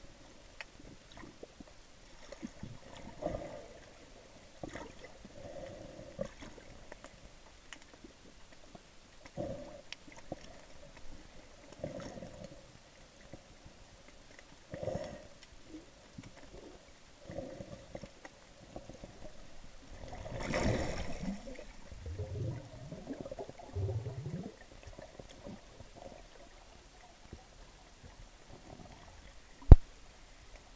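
Muffled underwater noise through a sealed camera housing: irregular gurgles and sloshes every second or two, a longer gurgling swell about two-thirds of the way through, and a sharp knock just before the end.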